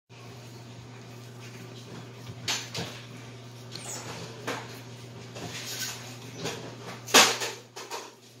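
Raw ground meat being patted and slapped between the hands while it is shaped, a string of short wet slaps, the loudest about seven seconds in, over a steady low hum.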